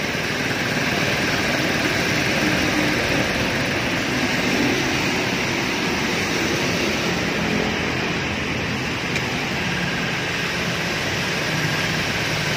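Toshiba air compressor running steadily, driven by its 0.75 kW three-phase Toshiba induction motor.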